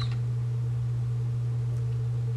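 A steady low hum that holds one pitch, with nothing else standing out.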